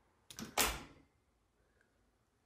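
A short knock and then a sudden bang about half a second in, dying away within half a second, followed by quiet.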